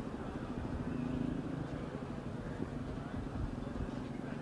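An engine idling with a steady low hum that holds an even pitch.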